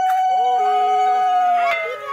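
Conch shell (shankha) blown in one long steady note that sags in pitch and dies away near the end.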